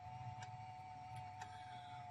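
Faint, nearly silent room tone with a steady high-pitched hum and two faint ticks.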